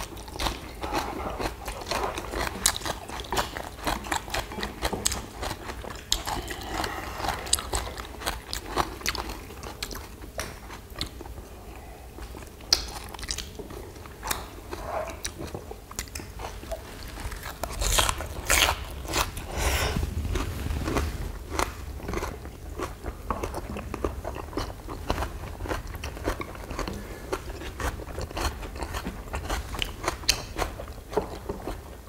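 Close-miked eating: several people chewing and taking crunchy bites of young radish kimchi noodles and side dishes, with many short clicks throughout. A louder, noisier stretch comes about two-thirds of the way in.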